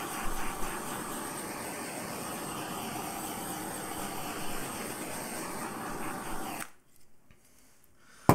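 A steady rushing hiss from a handheld tool passed over wet acrylic paint, with a faint steady whine in it. It cuts off suddenly near the end as the tool is switched off.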